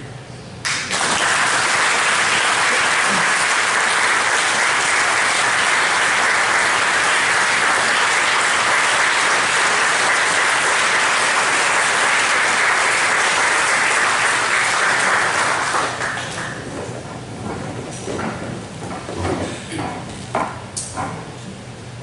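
An audience applauding: dense, steady clapping that starts suddenly about a second in, holds for about fifteen seconds and then dies away.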